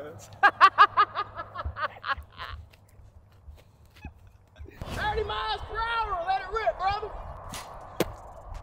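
A man laughing in quick, rhythmic bursts, then after a short lull a sharp knock and more drawn-out laughing or hooting from a voice, with a brief click near the end.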